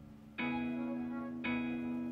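Instrumental background music: two sustained struck chords, about half a second in and again a second later, each ringing on and fading slowly.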